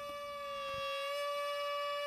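Gagaku shrine music: a shō mouth organ and bamboo flutes sounding one steady, held chord of several reedy tones, swelling slightly in the first second.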